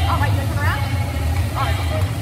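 Indoor swimming-pool hall ambience: a steady low rumble with short, high, echoing voices calling out three times.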